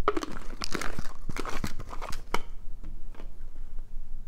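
Plastic packaging crinkling and rustling as items are handled, with a few sharp crackles, busiest in the first two and a half seconds and quieter after.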